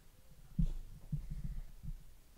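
Footsteps on a church floor: a quick, irregular run of dull, low thumps starting about half a second in.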